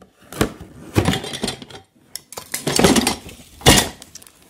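Metal parts of a flat-pack tyre stand clanking and rattling against each other as they are handled out of the box, in several bursts, the loudest knock near the end.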